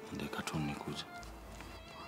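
A woman sobbing in a wavering, crying voice over soft background music, followed by a brief low rumble.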